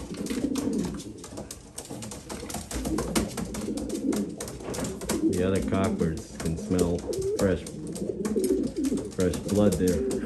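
Racing homer pigeons cooing over and over in low throaty pulses, the courtship cooing of a cock newly paired with a hen, with scuffling clicks from the birds moving in the cage.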